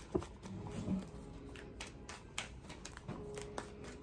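A deck of large paper message cards being shuffled by hand: a quiet run of irregular card clicks and flicks.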